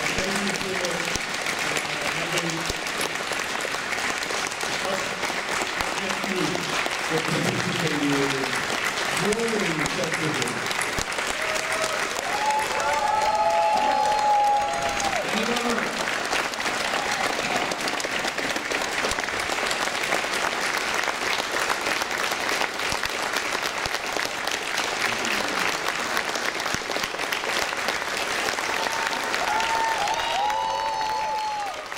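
Audience applauding steadily, with a few voices heard over the clapping.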